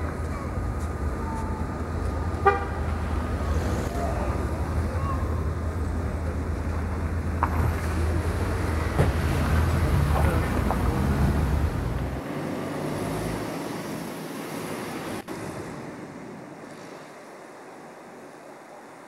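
City street traffic rumble with a short car horn toot about two and a half seconds in. The rumble drops away after about twelve seconds and the sound grows quieter.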